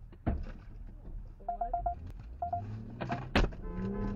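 A metal pipe striking a car, picked up by a dashcam microphone: a hard bang just after the start and a louder one near the end, with quick runs of short electronic beeps in between.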